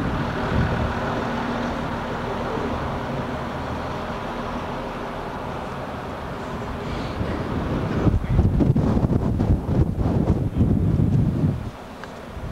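Steady outdoor street noise with a low engine hum, then wind buffeting the camera's microphone in rough, irregular gusts from about eight seconds in until just before the end.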